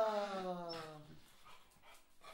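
Beagle howling: one long howl that falls slowly in pitch and fades out about a second in.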